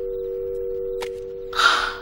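North American telephone dial tone, two steady tones blended into one hum, heard in the earpiece after the other party hangs up. A sharp click comes about a second in, and a short, loud burst of hiss-like noise near the end.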